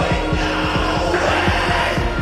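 Live metal band playing an instrumental stretch: heavy distorted electric guitars and bass over drums, with rapid kick-drum hits about five a second and no vocals.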